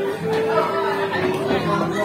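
Many people talking at once in a busy restaurant dining room, with background music playing a steady melody under the chatter.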